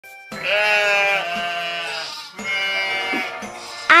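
Goat bleating, given as the ibex's call: two long, wavering bleats, the first about two seconds long and the second about one second, over background music.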